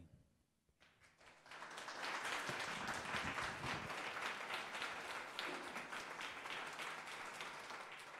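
Audience applauding at the close of a talk. The clapping starts about a second in after a brief silence, swells quickly, then holds and eases slightly toward the end.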